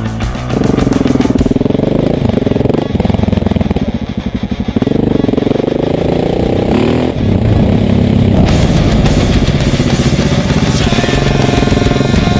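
KTM 690 Enduro R's single-cylinder engine being ridden, its pitch rising and falling with the throttle. It takes over from rock music about half a second in.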